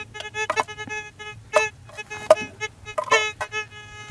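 A VLF gold metal detector (Fisher Gold Bug 2) gives a string of short, irregular beeps at one steady pitch as its coil sweeps over iron-rich, heavily mineralized rock. The responses are iron targets.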